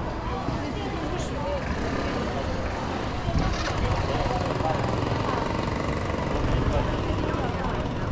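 Busy street ambience: a steady low rumble of traffic with indistinct chatter of passers-by.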